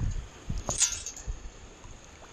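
Perforated stainless-steel sand scoop lifted out of shallow water, water running and dripping out through its holes, with a couple of short splashes or knocks about half a second and nearly a second in, then quieter.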